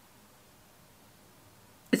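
Near silence: room tone, with a woman starting to speak at the very end.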